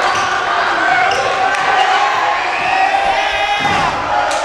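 A basketball being dribbled on a hardwood gym floor during a game, with short sharp bounces over the voices of spectators and players in the gym.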